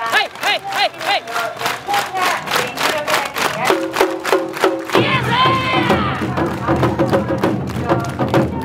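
Awa Odori festival music: a group of dancers shout a rhythmic chant, a short call on each beat of a quick, even percussion beat. About five seconds in, the full accompaniment band of drums, shamisen and flute comes in, much denser and fuller.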